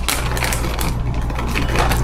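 Granulated sugar pouring from its bag, a fast, dense crackle of tiny grains hitting and sliding, with some rustle of the bag.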